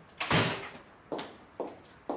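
A door shuts with a sharp thud, followed by two footsteps of hard-soled shoes on a wooden parquet floor.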